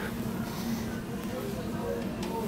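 Big-box store ambience: faint, indistinct voices of shoppers over a steady low hum.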